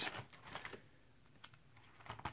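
Faint clicks and rustling of plastic card-sleeve binder pages being turned, settling to near quiet about a second in.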